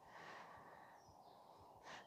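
Near silence: room tone, with faint breathing.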